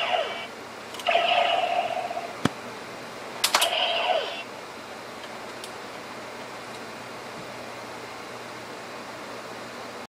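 Kamen Rider DX Decadriver toy transformation belt: plastic clicks of its buckle and handles being worked, each followed by a short electronic sound effect from its small speaker, three times in the first four and a half seconds, with a lone click in between; then only faint hiss.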